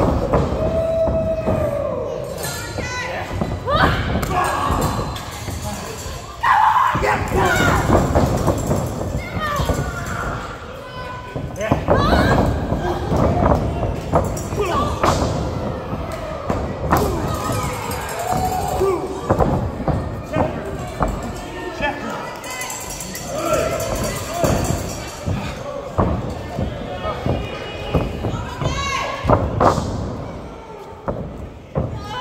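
Repeated thuds of bodies and blows landing in a pro wrestling ring, some sharp and sudden, among shouting and yelling voices.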